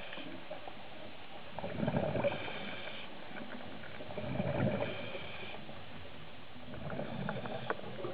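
Scuba diver breathing through a regulator underwater, heard through the camera housing: three breaths, each a hiss followed by a rumble of exhaled bubbles, about two and a half seconds apart.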